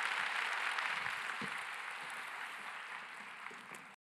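Audience applauding, fading away steadily and cut off abruptly at the very end.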